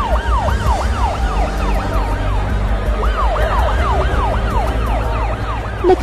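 Emergency-vehicle siren sounding in fast rising-and-falling sweeps, about three a second, over a steady low rumble. The siren breaks off briefly partway through, then resumes.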